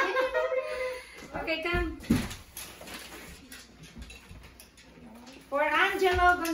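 Children's high-pitched voices: short wordless calls in the first second and a drawn-out, wavering call from about five and a half seconds in. A single thump comes about two seconds in, with quieter rustling and handling noise between the calls as presents are unwrapped.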